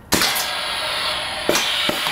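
Air-operated airless cartridge filler running: a sudden steady hiss of compressed air sets in just after the start, with sharp clicks from the machine about one and a half seconds in and again just before the end.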